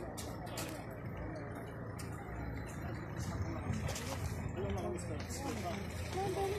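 Street sound: a car engine running on the road, a steady low rumble, with people's voices rising in the background near the end.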